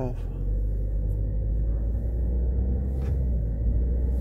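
Steady low rumble of a running vehicle.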